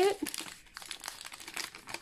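Paper packaging crinkling and rustling as it is handled and opened, a dense run of small crackles.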